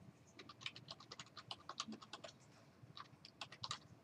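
Faint typing on a computer keyboard: an irregular run of key clicks, a short pause, then a few more keystrokes.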